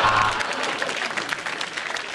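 Studio audience applauding after a joke, the clapping thinning out and dying away.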